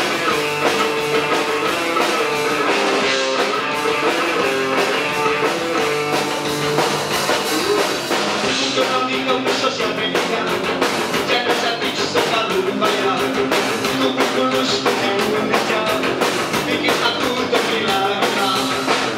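Live rock band playing: electric guitars, bass guitar and drum kit, loud and steady. The drumming grows busier about halfway through.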